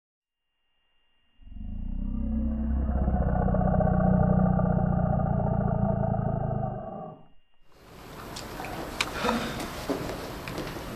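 A deep, long animal roar sound effect that starts about a second and a half in, holds for about five seconds and fades out. Near the end it gives way to the hum of a large gym room with a few sharp knocks and squeaks.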